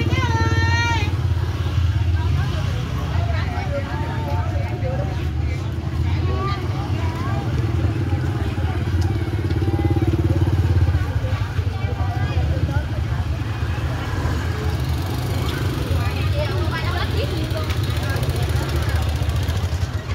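Busy street market: small motorbike and scooter engines running past at close range, mixed with the voices of shoppers and vendors. The engine sound is loudest about ten seconds in.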